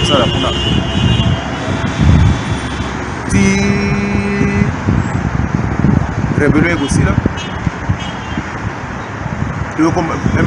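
Steady street traffic noise with car horns: one horn sounding until about a second and a half in, and a second horn held for over a second around the four-second mark, under a man's speech.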